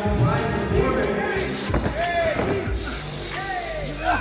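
Ringside voices shouting over background music, with several dull thuds mixed in.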